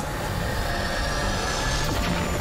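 Cartoon sound effect for the green full moon closing in: a sustained drone of several held high tones over a low rumble, one tone slowly rising in pitch, swelling near the end.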